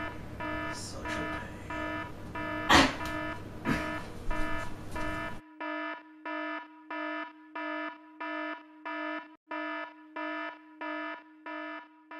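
Electronic alarm beeping over and over at one steady pitch, about three beeps every two seconds. A loud thump comes about three seconds in. The room's background noise cuts off suddenly a little past five seconds, and the beeping goes on alone.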